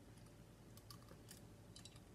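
Near silence with a few faint, soft lip and tongue clicks from a mouth working over a hot chilli, over a low steady room hum.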